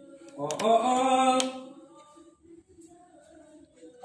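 A singing voice holds one drawn-out, wavering melodic phrase for about a second, then only a faint low hum remains.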